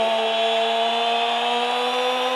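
A ring announcer's voice holding one long, steady drawn-out vowel in the boxer's name "Lomachenko", stretched for dramatic effect.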